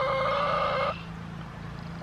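A chicken giving one long, level call that stops about a second in.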